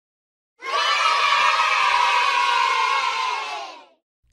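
A group of children cheering together: one sustained cheer that starts about half a second in and fades out just before the end.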